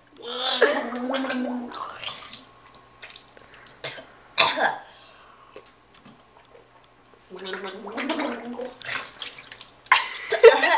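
A woman gargling water to rinse cinnamon powder from her mouth: a first gargle for about two seconds, a short sharp spit into the sink near the middle, then a second, lower gargle near the end.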